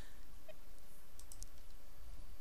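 A few quick, light computer mouse clicks a little over a second in, over a steady low background hum.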